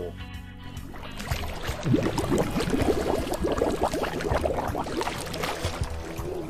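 Background music with steady low sustained notes; from about a second and a half in, a busy flutter of short, rapid sounds joins it and carries on.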